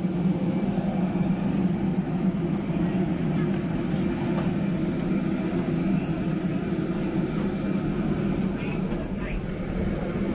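Steady jet airliner drone with a thin high whine, from aircraft parked on the apron.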